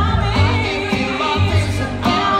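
Live band music: a woman singing lead over acoustic guitar and bass guitar, the bass notes strong and steady underneath.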